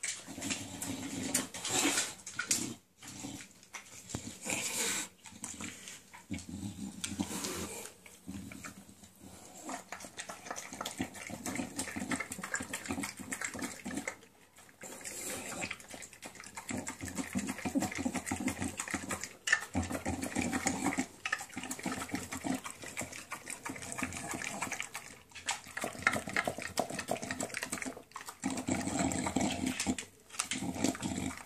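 English bulldog eating raw minced meat from a stainless steel bowl: rapid, wet chewing and smacking that runs almost without a break, with a short lull about halfway through.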